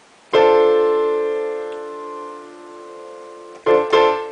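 A D minor 7th chord (D, F, A, C) played on an electronic keyboard with a piano sound. It is struck about a third of a second in and held, slowly fading, then struck again just before the end.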